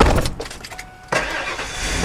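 A thump, then about a second in the Ford Expedition's V8 engine starts and keeps running.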